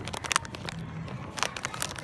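Plastic chip packet crinkling as it is handled, with irregular sharp crackles.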